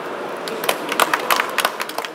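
Scattered hand claps from a small audience, starting about half a second in and growing denser, over steady background noise.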